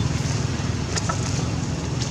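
A steady low engine rumble with an even pulse, from a running motor vehicle, and a faint click about a second in.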